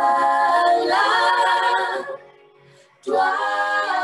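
A five-voice female vocal group singing a cappella in close harmony, heard through a video call. A sustained phrase breaks off about two seconds in, and after a short pause the voices come back in together.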